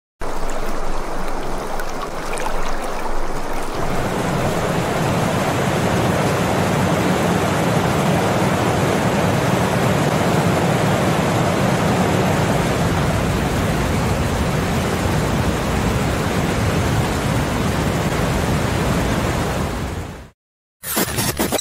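Loud, steady rushing noise like static or rushing water, starting suddenly; a deeper rumble joins about four seconds in, and the sound cuts off abruptly at the end.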